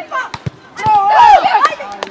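Excited shouting from spectators and players during an attack on goal: a few sharp knocks early on, then a loud burst of overlapping yells about a second in.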